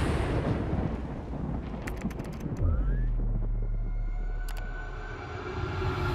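Horror-trailer sound design with no speech. A noisy wash fades away, and a few sharp clicks and a short rising tone come about two seconds in. A deep low rumble sets in just before the halfway point, and a swell of noise builds near the end.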